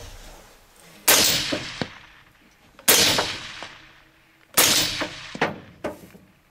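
Three gunshots about a second and three-quarters apart, each ringing out and dying away over about a second, fired from inside an enclosed hunting blind, with two smaller sharp knocks near the end.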